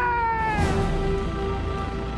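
A man's long wordless yell, falling slowly in pitch and ending under a second in, over steady background music.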